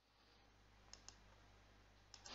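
Near silence: faint room tone with two faint clicks close together about a second in.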